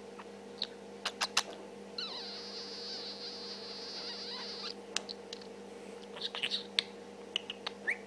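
Budgerigar vocalising quietly to herself: a few sharp clicks, then a long, steady, high-pitched note from about two seconds in lasting nearly three seconds, then a run of short high chirps and clicks near the end.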